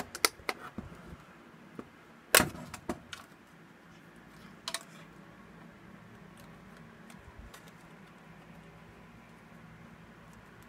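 Small screwdriver working the retaining clips of a car stereo's front frame loose from its sheet-metal chassis: a scatter of sharp metallic clicks and clacks, the loudest about two and a half seconds in, with a last one near five seconds. A faint steady hum follows.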